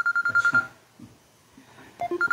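An electronic telephone ring: a high, rapidly pulsing trill that cuts off less than a second in, followed by near quiet.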